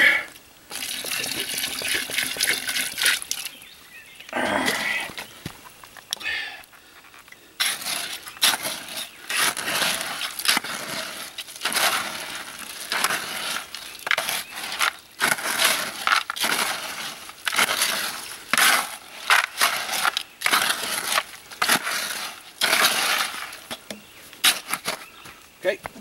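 A garden trowel stirring gravel-laden Quikrete concrete mix in a plastic five-gallon bucket: gritty scraping and rattling of stones against the plastic, in quick repeated strokes from about seven seconds in.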